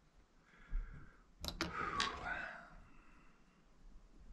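Sharp clicks and a short rattle of a metal wire-loop sculpting tool being picked out of a plastic box: a soft knock near the start, two quick clicks about a second and a half in, and a third half a second later.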